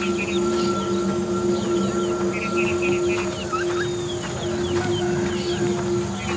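Film soundtrack: a steady low music drone with birds chirping over it, many short chirps throughout; a higher held tone in the drone drops out about halfway through.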